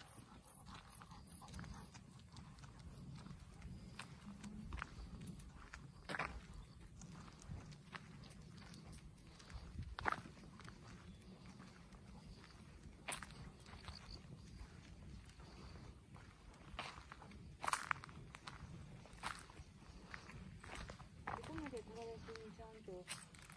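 Footsteps and scuffs on a narrow paved path, faint and irregular, with a scattering of short sharp clicks over a low outdoor rumble.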